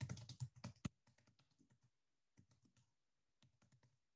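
Typing on a computer keyboard: a quick, dense run of keystrokes in the first second, then a few shorter runs of lighter taps.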